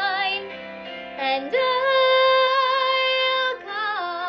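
Young woman singing a musical-theatre song solo over a quiet accompaniment. After a short phrase with vibrato, she holds one long, loud note for about two seconds in the middle, then moves on to the next phrase near the end.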